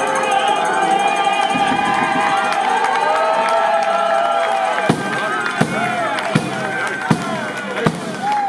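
Many voices singing a melody together in a crowd. From about five seconds in, a large frame drum with jingles (tammorra) is struck in a steady beat, roughly one stroke every three-quarters of a second.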